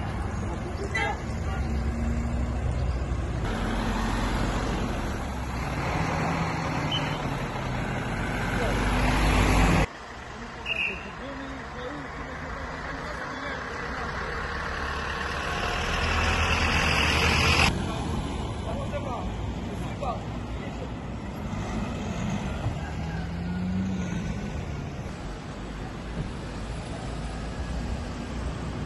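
Roadside traffic noise, with cars passing and running nearby and indistinct voices. The sound changes abruptly twice, about ten and eighteen seconds in.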